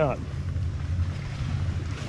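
Wind blowing across the microphone, a steady low rumble.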